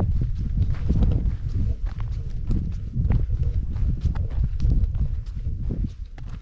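Footsteps of a hiker crunching along a dry sandy, gravelly trail at a steady walking pace, about two steps a second, over a continuous low rumble.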